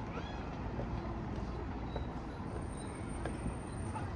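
Open-air park and street ambience: a steady low rumble of traffic, with one short high-pitched wavering call in the first half-second.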